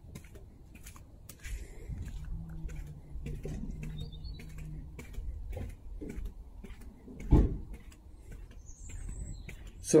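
Footsteps of a person walking on paving, a run of light regular clicks and scuffs, with a low steady hum between about two and five seconds in and a single loud thump about seven seconds in.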